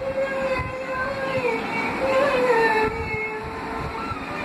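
A woman singing without words being picked out, holding long notes that slide slowly up and down between pitches.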